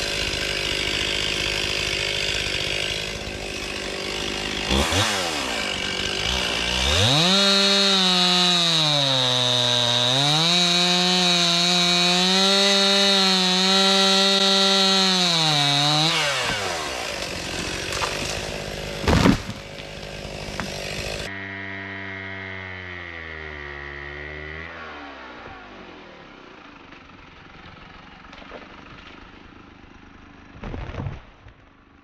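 Stihl pole saw's small two-stroke engine revving high and cutting into a tree trunk, sagging briefly under load about ten seconds in, then dropping back toward idle. A sudden loud crack follows a few seconds later. After an abrupt change in the sound the engine runs lower, falls in pitch and fades.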